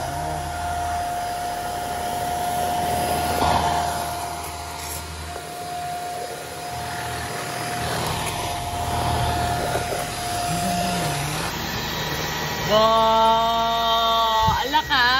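Monarc Charlie cordless stick vacuum running at its lowest power setting (level 1): a steady motor whine over a rushing of air. The whine stops about eleven seconds in.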